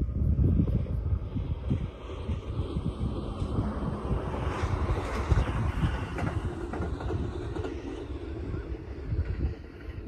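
A distant electric passenger train running across a bridge, its rolling noise swelling to a peak about halfway through and then fading. Wind buffets the microphone throughout.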